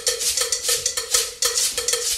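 A handheld metal cowbell struck in a steady rhythm of about four strokes a second, with a shaker rattling along with it.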